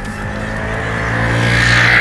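A motor scooter's engine approaching and passing close by, growing steadily louder to a peak near the end.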